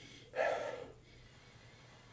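A man sniffing a glass of beer with his nose inside the glass: one short inhale through the nose about a third of a second in.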